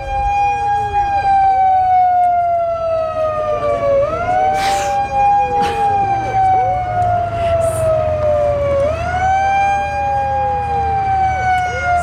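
A siren wailing in repeating cycles about every five seconds. Each cycle rises quickly in pitch and then falls slowly, over a low steady hum.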